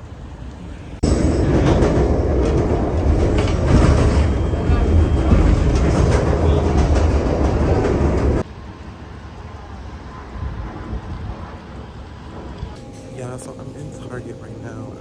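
A rapid-transit train running on the track, heard from inside the passenger car: a loud, steady noise that starts abruptly about a second in and cuts off suddenly about seven seconds later.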